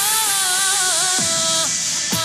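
Loud electronic dance music in a breakdown: the heavy beat has dropped out, and a single wavering, ornamented melody line carries on over a bright, hiss-like wash.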